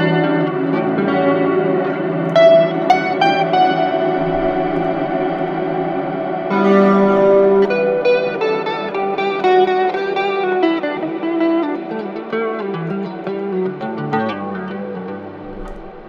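Clean electric guitar, a Fender Stratocaster, played through an Axe-FX III's Nimbostratus reverb set to a very long decay, so picked notes and chords hang and wash into each other. A fresh chord is struck about six and a half seconds in, and the playing thins out near the end.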